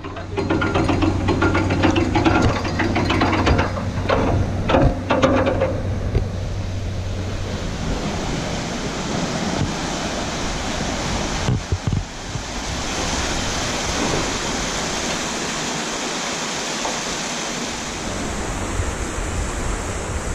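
Canal lock paddle gear being wound with a windlass, its ratchet pawl clicking, under a low steady hum for the first several seconds. After that comes an even rush of water through the opened paddle.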